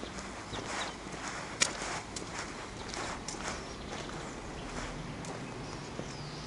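Footsteps walking at a steady pace on cobblestones, with one sharp click, the loudest sound, about one and a half seconds in.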